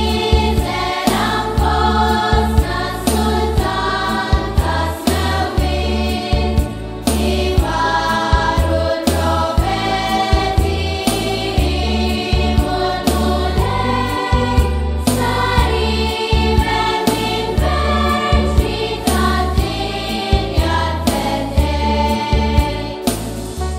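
Background music: a choir singing a traditional Maltese Christmas carol over an instrumental backing with a steady beat and bass line.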